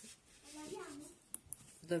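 A woman's voice murmuring softly, then two sharp clicks about a second and a half in.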